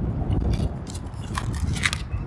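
Wind rumbling on the microphone, with a few short crackles around half a second in and again near the end.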